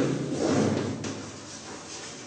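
Chalk scratching on a chalkboard as a word is written by hand, louder in the first second and fainter after.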